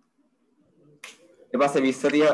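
A man's voice speaking in the second half. Before it the first second is quiet apart from a faint low murmur, and a short sharp sound comes about a second in.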